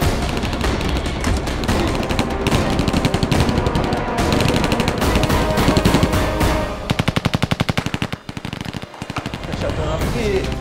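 Submachine-gun automatic fire in rapid bursts over background music, with a distinct burst near the end at about a dozen shots a second.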